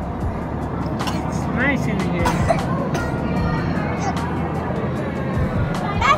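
Indistinct chatter of other visitors, with a few high children's voices, over background music.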